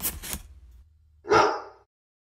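Quick scratchy strokes of a pen on paper that stop early, then a single short dog bark a little past a second in.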